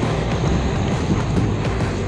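Background music over a steady low outdoor rumble.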